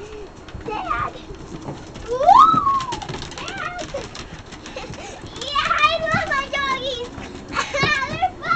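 A young child squealing and vocalizing without words in excited play. There is one long rising-then-falling call about two seconds in and a run of warbling squeals from about five and a half to seven seconds.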